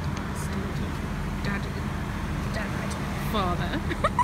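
A car engine running steadily, a low rumble under talk, with a few short rising and falling vocal sounds near the end.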